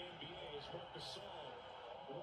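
Faint speech at low volume, a man talking, typical of a basketball broadcast's commentary playing quietly under the highlights.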